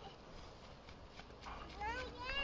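Faint children's voices outdoors, mostly quiet at first, then a child's high-pitched rising call near the end.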